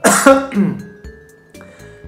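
A man clears his throat once, loudly: a rough burst with a voiced grunt that falls in pitch and dies away within about half a second. Soft background music with held notes carries on after it.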